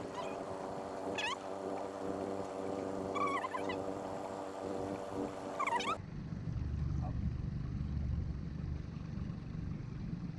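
Small outboard motor running slowly at trolling speed with a steady hum, and a few short, high squeals over it. About six seconds in the sound changes abruptly to a lower, rougher rumble.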